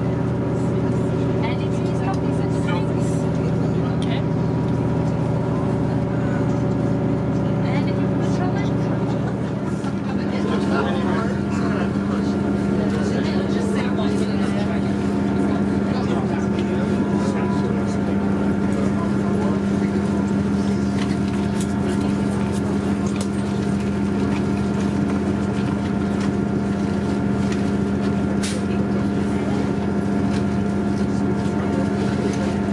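Interior of a diesel passenger train running along the line: a steady engine drone with several hum tones over wheel and rail noise. About ten seconds in, the engine note changes, the lower hum dropping away and a higher one taking over.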